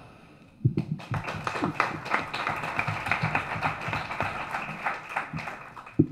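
Audience applauding. The clapping starts just under a second in and dies away near the end.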